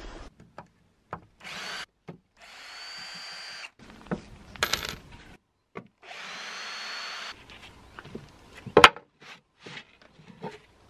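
Cordless drill backing screws out of old wooden planks, its motor running in three short runs of about a second each with a steady whine, and small clicks between them. A single sharp knock comes near the end.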